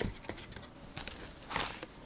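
Handling of a cardboard phone box and its packed contents: a soft knock at the start, scattered light taps, and a brief rustle about one and a half seconds in.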